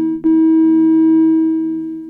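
Ciat Lonbarde Sidrax and Cocoquantus analog synthesizer setup, played by touching its metal bars, sounding a held chord of steady tones. The chord gives way to a new one with a click about a quarter second in, and that chord fades away toward the end.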